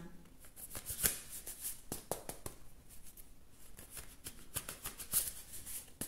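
An oversized oracle card deck being shuffled by hand: an irregular run of soft clicks and rustles as the cards slide and tap against each other, with a couple of sharper slaps.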